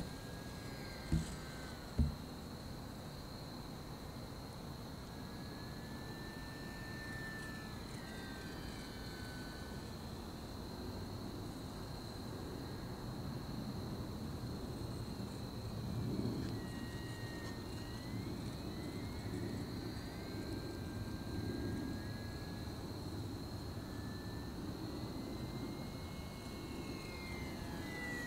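Small electric RC airplane's motor and propeller whining faintly in the distance, its pitch rising and falling as it manoeuvres, over a steady low rumble. Two short knocks sound about one and two seconds in.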